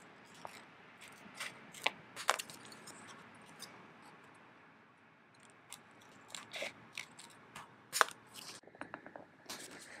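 Scissors cutting through an instant photo print in short, scattered snips, with soft paper handling as the cut-out is set down on the journal page. A single sharper click about eight seconds in is the loudest sound.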